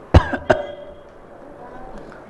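A man coughs twice in quick succession near the start, clearing his throat close to a microphone.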